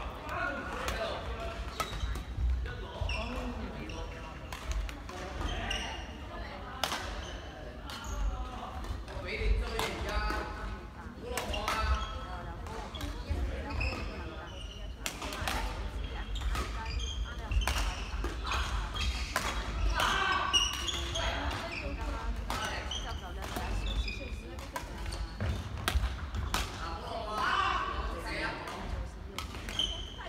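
Badminton rackets striking shuttlecocks in a reverberant sports hall: sharp, irregular clicks throughout as rallies go on.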